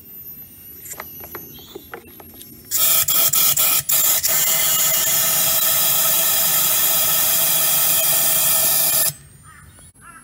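Compressed air hissing with a whistling tone, forced into a lawn mower's fuel tank to push water out through the carburettor bowl drain. It starts about three seconds in, stutters a few times at first, then runs steadily before cutting off sharply about nine seconds in; a few light clicks come before it.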